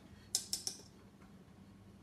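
Three quick, sharp clicks in a row about a third of a second in, over a faint steady hum.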